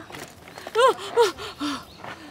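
Young children giving three short, high squeals of excitement as their playground basket swing starts moving.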